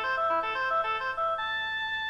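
Electronic keyboard music: a quick melody of short notes that changes pitch several times a second, then settles on one note held through the last half second or so.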